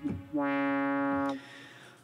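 Roland Zenology Pro software synthesizer playing the JX Cream patch: one held note with a bright, buzzy tone, starting about a third of a second in, holding steady at one pitch for about a second, then dying away quickly with a faint short tail. The end of a previous note cuts off right at the start.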